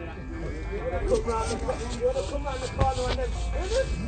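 Indistinct voices talking quietly over a steady low rumble.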